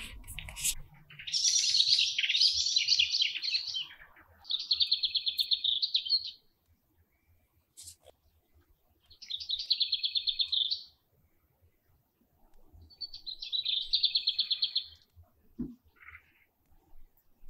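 A songbird singing: a jumble of high chirps over the first few seconds, then three separate high trills of rapid repeated notes, each lasting about two seconds, with quiet gaps between them. A short soft knock comes just before the end.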